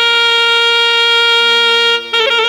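Background music: a reed wind instrument holds one long steady note, with a low drone joining in near the end.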